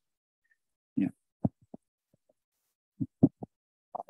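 A voice in short, clipped fragments: a brief "yeah" about a second in, then a few short voice blips around three seconds in, with dead silence between them.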